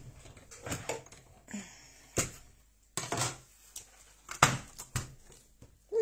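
Die-cut cardstock and cutting plates handled on a crafting table: a string of irregular sharp taps and clicks with soft paper rustling, the loudest knocks near the middle.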